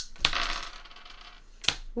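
Dice thrown onto a tabletop game board: a sharp clack about a quarter second in, a brief clatter as they tumble and settle, and one more click near the end.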